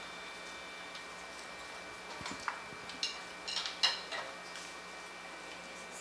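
A few light clicks and taps of instruments and stage gear being handled, bunched together from about two to four and a half seconds in, over a faint steady high tone.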